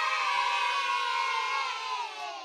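A group of children cheering a drawn-out "yay!" together, used as a celebration sound effect. The many voices hold one long shout that slides slightly down in pitch and fades out near the end.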